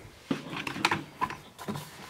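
Handling noise: a few light knocks and rustles as a foam RC jet wing is picked up and moved about.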